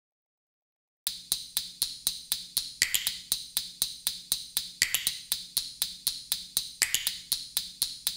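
Song intro of percussion alone, starting about a second in: a dry click on a steady beat, about four a second, with a brief hissing swell every two seconds.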